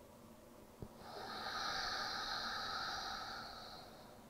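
A slow, steady breath through the nose, an airy hiss that swells in about a second in and fades out near the end, lasting roughly three seconds. It is one paced four-count breath of box breathing (sama vritti pranayama).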